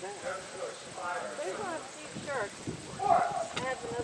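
Hoofbeats of a harness horse trotting past, pulling a four-wheeled carriage over arena sand, with people talking in the background.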